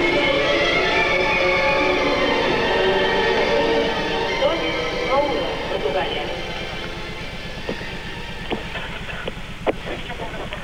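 Arena sound: music playing over crowd noise in a gymnastics hall, dropping lower about six seconds in, with a few sharp knocks near the end.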